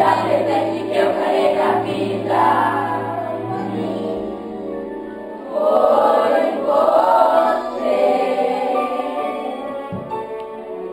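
A group of children singing a song together in chorus, growing louder a little past halfway through.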